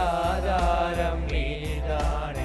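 Three men singing a gospel song together through handheld microphones and a PA, holding long, gliding sung notes.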